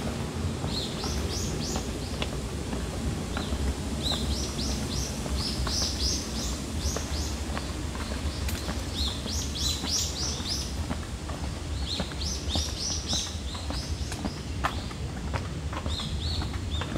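Birds chirping in several runs of quick, high repeated notes over a steady low outdoor rumble.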